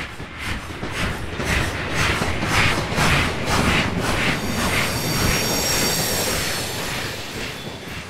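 A train passing, its rumble building over the first second or two with a regular clack of wheels over rail joints, about two a second. A thin high-pitched wheel squeal joins in about halfway through, and the sound eases slightly near the end.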